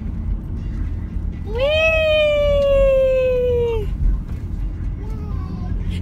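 A long, high 'wheee!' held for about two seconds, its pitch slowly falling, over the steady low rumble of a moving car's cabin.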